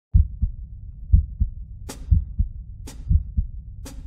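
A heartbeat sound effect opening a show intro: paired low 'lub-dub' thumps about once a second. From about two seconds in, a sharp crisp hit falls between the beats, once a second.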